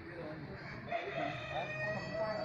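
A rooster crowing: about a second in, one long call that rises briefly and then holds a steady note.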